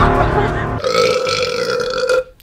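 A woman's excited gasps over background music, followed about a second in by a long, steady held tone.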